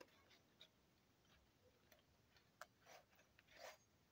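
Near silence, with about half a dozen faint, short clicks and rustles: hands handling the sanding belt and guard of the belt grinder attachment while the motor is stopped.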